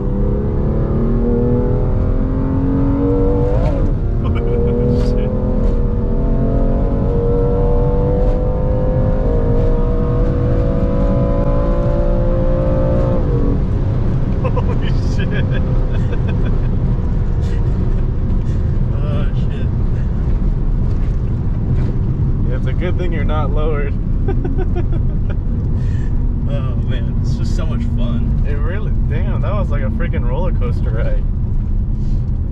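BMW M2 Competition's twin-turbo straight-six pulling in fifth gear, heard from inside the cabin. Its pitch climbs steadily for about thirteen seconds, then drops away suddenly as the throttle is lifted. After that come steady tyre and wind noise at speed.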